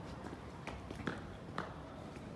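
Footsteps on a cobblestone street: a few hard, separate steps over a steady background hiss, the sharpest a little after one second and about one and a half seconds in.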